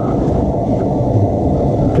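A loud, steady low rumble.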